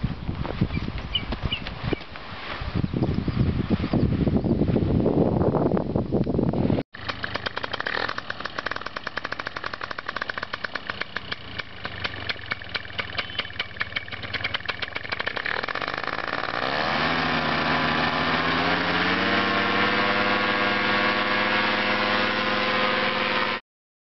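A rushing noise for the first seven seconds, then, after a sharp break, a small engine running with a fast, even ticking. About two-thirds of the way in it revs up and runs steadily at a higher speed until it cuts off abruptly near the end.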